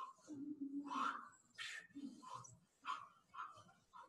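Faint grunts and hard breathing from people straining through a core exercise on sliders, with a drawn-out groan in the first second and short hissing exhales after it.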